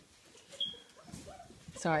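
A young Weimaraner puppy gives a brief, faint high squeak about half a second in, with a few soft faint rustles around it.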